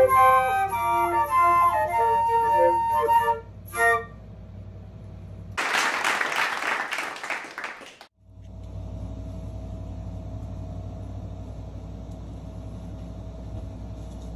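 Flute playing the last notes of a solo piece, ending about four seconds in. A loud burst of noise follows for about two seconds, then a steady low hum with a faint high tone.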